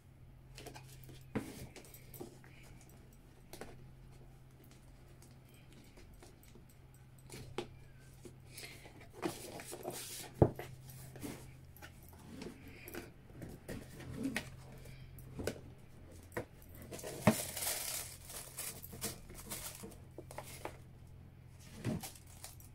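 Handling sounds of a cardboard gift box being unwrapped: a ribbon pulled off, the lid lifted and tissue paper rustling, with scattered light knocks. A sharp tap comes about ten seconds in, and a louder burst of paper rustling a few seconds before the end. A low steady hum runs underneath.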